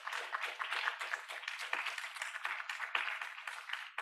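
A small audience applauding: many hands clapping steadily together.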